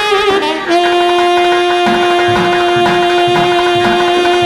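Alto saxophone playing Carnatic classical music: a quick ornamented phrase with wavering pitch, then, under a second in, one long held note, over low drum strokes at a steady pulse.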